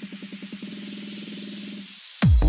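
Electronic dance music build-up in a bounce/donk DJ mix: a single low note repeated faster and faster until it blurs into one buzzing tone, over a wash of hiss. It cuts off just before the end, ahead of the drop.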